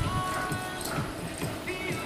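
Music playing from a radio broadcast, with sustained tones and irregular low thuds beneath.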